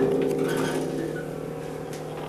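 A harp chord rings out and slowly fades, with a few faint higher notes plucked over it.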